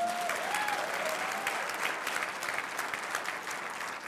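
Congregation applauding, the clapping slowly dying down.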